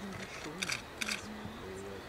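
Camera shutter firing in two short bursts of rapid clicks, a little over half a second and about a second in, over a low murmur of voices.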